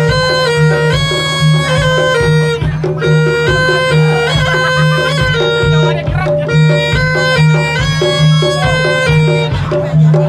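Javanese bantengan accompaniment: a slompret (double-reed shawm) plays a piercing melody of held notes that step up and down, over a steady drum beat and a low continuous drone.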